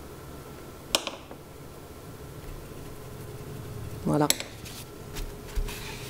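Light handling noises at a painting table: a sharp click about a second in and another around four seconds, as paintbrushes are tapped against and set down among ceramic palettes, then soft rustling near the end as a paper tissue is pressed onto the wet watercolour paper to blot a stain.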